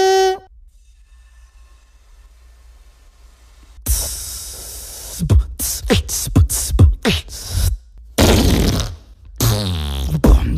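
A beatboxer's vocal sound effects: a held pitched tone that cuts off just after the start, a faint gap of about three seconds, then from about four seconds a run of quick kick-like thumps mixed with hissing and a longer hiss burst.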